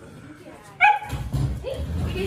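A dog gives one sharp, high-pitched bark or yip about a second in, followed by more lower dog noise.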